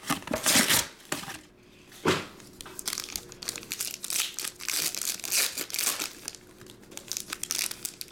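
A foil trading-card pack wrapper crinkling as it is handled and torn open. Two loud crackles come in the first two seconds, followed by steady lighter crinkling.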